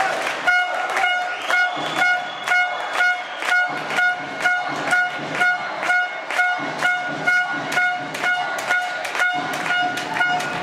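Spectators' horn tooted in short blasts in a steady rhythm, about one and a half to two a second, over beats that keep time with it: rhythmic fan support in the stands of a handball hall.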